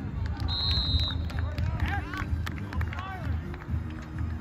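A referee's whistle gives one short, steady high blast about half a second in, over shouting voices from players and sideline onlookers.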